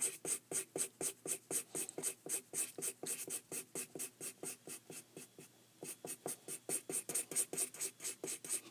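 Black felt-tip marker scribbling quickly back and forth on paper, about five strokes a second, shading in a solid area. The strokes pause briefly about five and a half seconds in, then go on.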